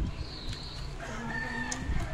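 A rooster crowing: one long, held call that starts about halfway through.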